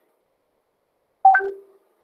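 Short electronic notification chime a little over a second in: a higher note falling to a lower one, lasting about half a second.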